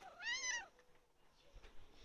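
Domestic cat giving one short meow, rising then falling in pitch.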